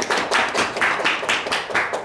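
Applause from a few people clapping their hands: a quick run of separate sharp claps, about six or seven a second, dying away near the end.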